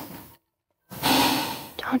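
A man taking a long, deep sniff through his nose with a shoe pressed to his face, starting about a second in after a brief silence. An earlier breath trails off at the very start.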